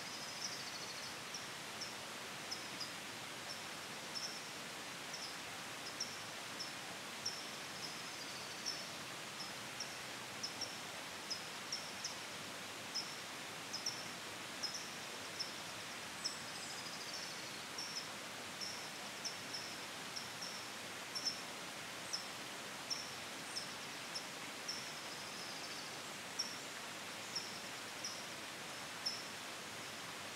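Small birds calling over a steady outdoor hiss: a short, high chip about once a second, and a slurred falling call every eight seconds or so.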